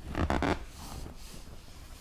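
A page of a large children's picture book being turned over, with a loud swish in the first half second that trails off into faint paper rustling.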